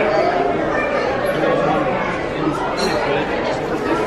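Steady background chatter of many people talking at once, no single voice standing out, in a busy indoor shop.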